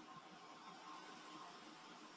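Near silence: faint steady hiss of room tone between spoken passages.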